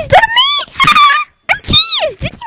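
A very high-pitched voice making short, sing-song syllables that swoop up and down in pitch, with brief gaps between them.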